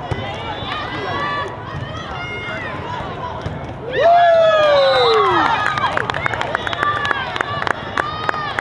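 Volleyball rally on a sport-court floor: sneakers squeaking, then about halfway a loud burst of shouting as the point ends, followed by a run of sharp hand claps.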